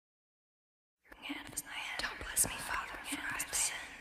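A person whispering, starting about a second in after silence.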